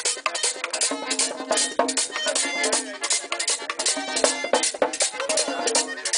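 Live merengue típico (perico ripiao) band playing: a diatonic button accordion carries the melody over a steady, fast beat of tambora drum and congas, with the metal güira scraping on every stroke.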